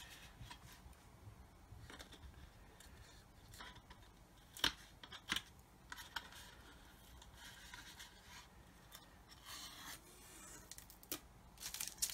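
Faint rustling of masking tape being peeled off a painted plastic model and the model being handled. There are two sharper clicks about halfway through and more rustling near the end.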